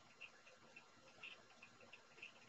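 Near silence, with faint, irregular small ticks a few times a second.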